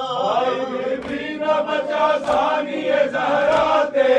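Urdu noha, a Shia mourning lament, chanted by male voices in unison to a slow sung melody, with regular chest-beating (matam) strikes keeping time.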